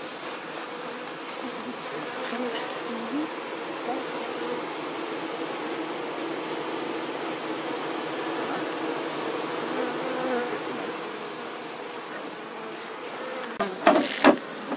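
A crowd of Buckfast honeybees buzzing steadily at the entrance of a freshly hived package colony, the ones at the front calling the rest of the bees in. A couple of sharp knocks come near the end.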